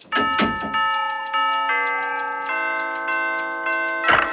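Cartoon clock sound effect: fast, steady ticking under chiming bell-like notes that enter one after another and keep ringing together.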